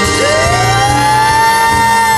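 Female jazz vocalist sliding up into one long, held high note just after the start, over a big band playing underneath.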